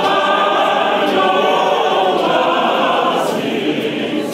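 A large congregation singing a Zulu hymn together in many voices, the singing thinning out near the end.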